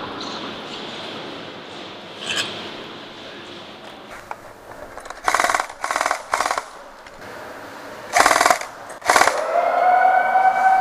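Short bursts of full-auto airsoft gunfire, five in all in two groups, from about five seconds in. Near the end a siren tone rises and then holds steady.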